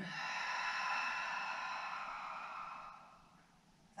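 A long, audible exhale through the mouth, like a sigh, lasting about three seconds and fading out near the end. It is the out-breath that goes with a pelvic tilt in downward-facing dog.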